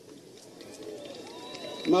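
A pause in a man's speech into a handheld microphone, filled with faint background voices; his voice starts again just before the end.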